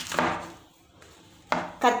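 A kitchen knife chopping through banana flower onto a wooden chopping board, with a sharp chop at the start.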